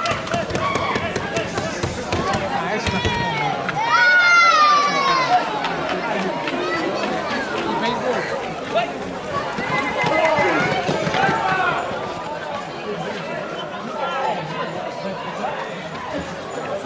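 Several people's voices shouting and talking over one another, with a loud, drawn-out shout about four seconds in whose pitch falls.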